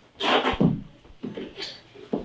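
A person's short, loud anguished vocal outburst, a sharp cry with breath in it, followed by fainter broken sounds.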